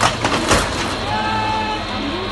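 Commotion at a runaway chairlift's bottom station: a sudden loud clattering burst of noise, then a long high-pitched cry held steady from about a second in.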